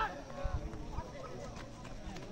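Voices of players and spectators calling out across a football pitch, with a few short low thumps about half a second and a second in.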